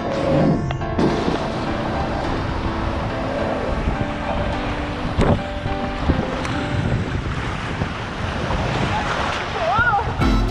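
Water rushing and splashing around an inflatable raft sliding fast down an open water slide, a steady loud rush that sets in about a second in.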